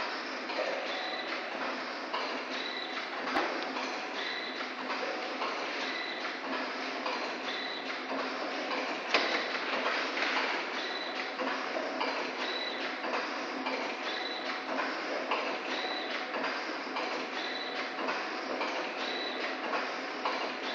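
Five-track vertical form-fill-seal liquor pouch packing machine running: a steady mechanical clatter with a short high tone and clicks repeating evenly a little more than once a second.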